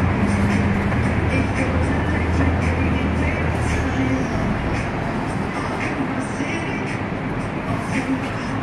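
Busy street traffic, with an articulated city bus's engine giving a low rumble as it passes in the first half, easing after about four seconds. Music plays underneath.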